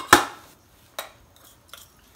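Metal kitchenware clinking: a sharp ringing knock just after the start, then a lighter click about a second later, as utensils are handled beside a stainless steel pan.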